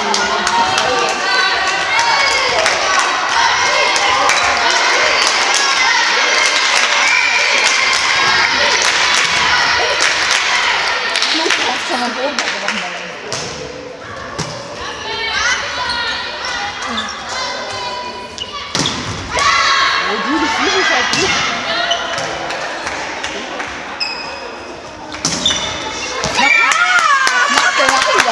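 Volleyball players' voices calling and shouting in a sports hall, with repeated sharp thumps of the ball being hit and landing on the court.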